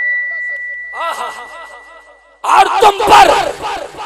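A steady high-pitched whine over the PA system, with faint voices under it, cuts off about two and a half seconds in. Loud shouted chanting by several voices then bursts out.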